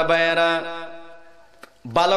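A man's voice chanting one long, drawn-out note in the sung style of a Bengali waz sermon. The note holds a steady pitch and fades away over about a second and a half. His voice comes in again just before the end.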